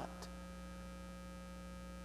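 Faint, steady electrical mains hum from the amplified microphone and recording chain, with nothing else sounding.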